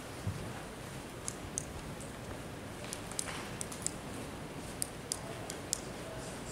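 Room tone of a meeting hall with a dozen or so faint, irregular small clicks and rustles, such as papers or a microphone being handled.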